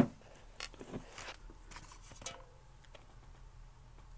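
Handling noise: a sharp click right at the start, then faint scattered small clicks and rustles for a couple of seconds before it settles to a low hum.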